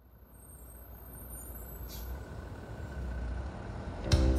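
A low rumbling noise fades in from silence and builds steadily louder, with a faint high whine above it.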